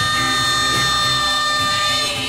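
Live early-1960s Motown soul band holding one steady, sustained chord.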